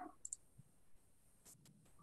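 Near silence with a few faint clicks: two close together just after the start and a couple more about a second and a half in, as a computer is worked to start a slideshow.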